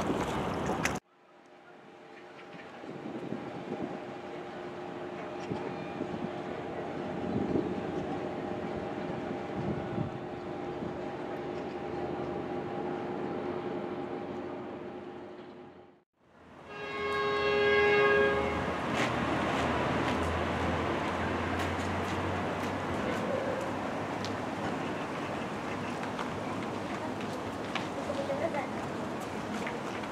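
Outdoor ambience with a low steady drone holding several tones; after a sudden cut, a horn sounds once for about two seconds, followed by busy outdoor noise with a low hum.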